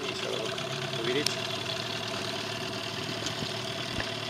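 Motorboat engine idling steadily, throttled back to let the boat slow.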